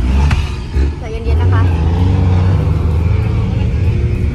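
Taxi engine and road noise heard from inside the cabin: a low, steady drone that grows louder about a second in.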